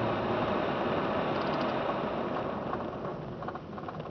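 Car tyre and road noise on a snow-covered street, heard from inside the cabin, dying away over the last couple of seconds as the car slows toward a stop, with light irregular crackles near the end.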